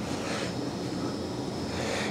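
Steady background room noise: an even hiss with no distinct event.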